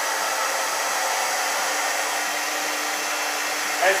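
Hand-held hair dryer running steadily through a round-brush blow-dry: an even rush of air with a steady low hum beneath it.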